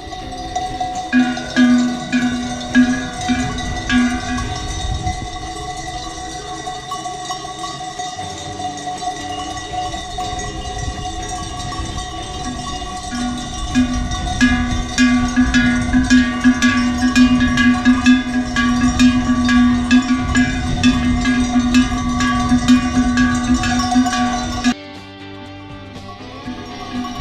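Livestock bells on a grazing flock of sheep and goats clanking and ringing continuously, many overlapping strikes, with wind rumbling on the microphone. The sound stops suddenly near the end.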